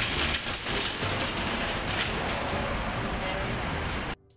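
Steady, fairly loud background noise with indistinct voices in it, like the hubbub of a busy street or mall entrance.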